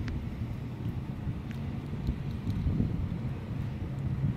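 Wind buffeting the microphone outdoors, a low rumble with a steady low hum underneath and a few faint clicks.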